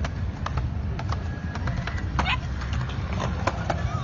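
Skateboard wheels rolling over paving slabs: a steady low rumble with frequent sharp clicks as the wheels cross the joints.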